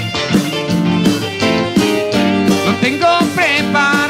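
A live band playing an instrumental passage: a lead melody with bending, wavering notes over a steady bass line.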